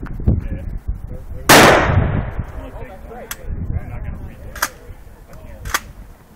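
A single close handgun shot about a second and a half in, with a ringing tail, followed by three much fainter sharp cracks spaced more than a second apart.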